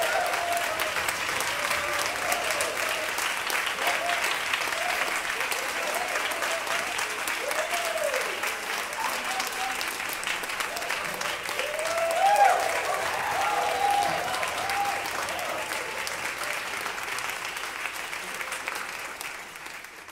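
Audience applauding after the end of a wind-band performance, with a few voices calling out over the clapping around eight seconds in and again about twelve seconds in. The applause fades away near the end.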